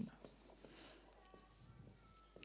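Faint sound of a dry-erase marker writing on a whiteboard.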